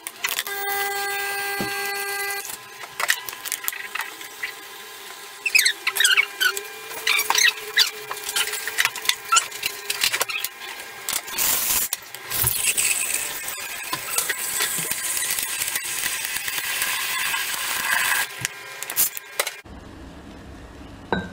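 Home pump espresso machine at work: a steady hum for the first couple of seconds, then the steam wand frothing milk in a jug, squealing and gurgling before settling into a loud hiss that cuts off suddenly near the end.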